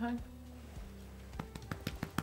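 Soft background music, with a quick cluster of small mouth clicks and lip smacks in the second half as a rolling liquid candy is licked and tasted.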